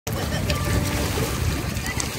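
Wind rumbling on the microphone over choppy lake water.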